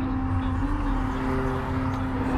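Steady low road rumble of a moving vehicle heard from inside, with one long held tone over it that bends briefly upward twice.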